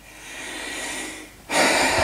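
A man's long audible breath, a noisy rush lasting about a second and a half, followed by speech starting near the end.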